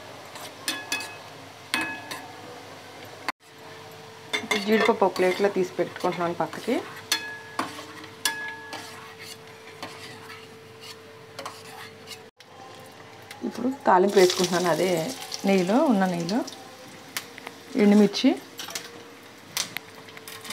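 Cashews, and later dried red chillies, sizzling in hot oil in a steel kadai, with a steel slotted spoon stirring and scraping against the metal in several squealing passes.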